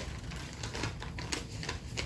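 Paper rustling and crackling as a paper ballot is drawn out of an envelope and unfolded, a run of soft, irregular clicks.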